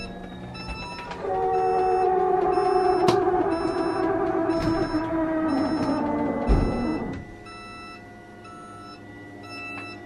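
The motor of a motorhome's automatic leveling jacks runs as all the jacks retract: a whine of several tones starts about a second in, lasts about six seconds, then drops to a quieter hum. Short beeps repeat about once a second throughout.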